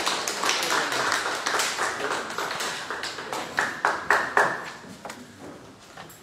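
Scattered hand-clapping from a congregation, thinning out and stopping about five seconds in, with a few louder claps just before it ends.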